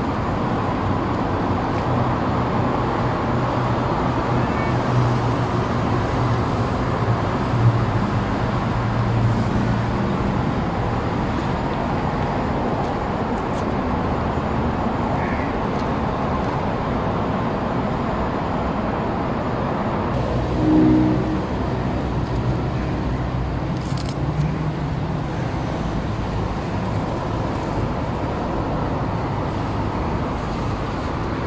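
Steady road traffic noise, a continuous rumble with a low hum, rising briefly about two-thirds of the way through.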